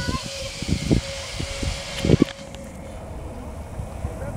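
Zip wire trolley pulley running along the steel cable: a steady hum that fades out about three seconds in, over low buffeting noise on the microphone.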